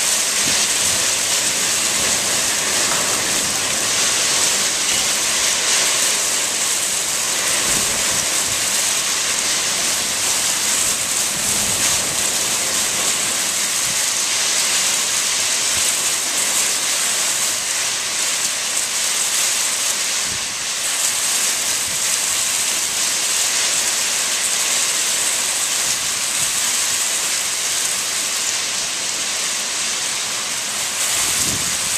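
Damaging straight-line thunderstorm winds with driving heavy rain: a loud, steady rushing that eases only briefly about twenty seconds in.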